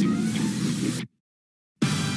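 Trailer soundtrack: a dense mix of music and hissing noise that cuts off abruptly to dead silence about a second in, then comes back just before the end.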